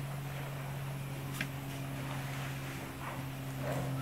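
A steady low hum over faint background noise, with a single faint click about a second and a half in.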